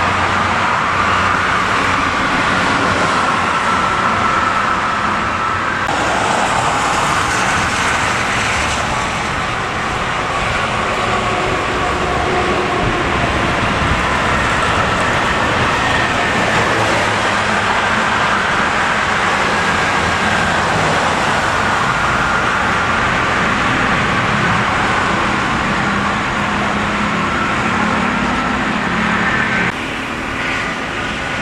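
Steady traffic noise from a toll road, with cars and coach buses passing at speed.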